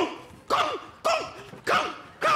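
A voice calling out short "kan" and "kon" sounds in a steady rhythm, about two a second, imitating the ball hits of a table-tennis rally. Each call starts sharply and its pitch rises and falls.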